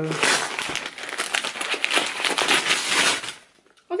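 Pink paper wrapping crinkling and tearing as a parcel is unwrapped by hand, a busy run of rustles and rips that stops about three and a half seconds in.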